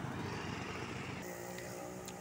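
Small motor scooter engines passing on the road: one scooter goes past close by, and about a second in the hum of another approaching scooter comes in.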